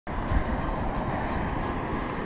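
Wind buffeting the microphone in a low, gusty rumble over the steady wash of surf breaking on the beach.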